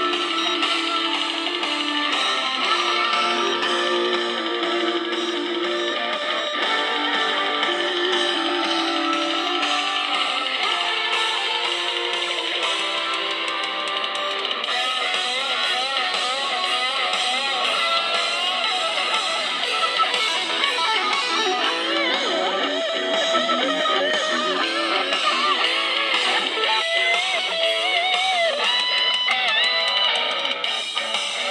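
Guitar music: steady held notes, then from about halfway a guitar solo with bent, wavering notes.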